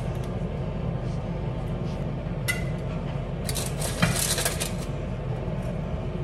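A slotted spatula scraping and clinking against a baking dish and a plate as roasted sweet potato is served out, with a cluster of clinks and scrapes about halfway through.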